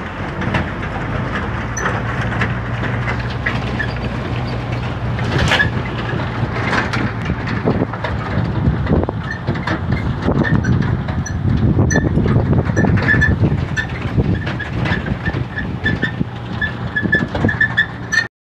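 Utility boom truck driving along a road, heard from its open cargo bed: a steady engine and road drone, with loaded gear and aluminium ladders rattling and knocking throughout.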